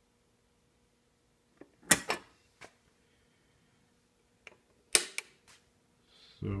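Sharp mechanical clicks and knocks in two short clusters, about two seconds in and again about five seconds in, over a faint steady electrical hum.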